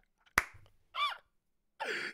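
A pause in conversation with one sharp click about half a second in, then a brief sound from a person's voice whose pitch rises and falls, and speech starting again right at the end.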